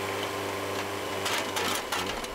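Diesel engine of a JCB backhoe loader running at a steady, low, even hum while its hydraulic rear bucket lifts and swings a load of soil. A few sharp clicks or knocks come in the second half.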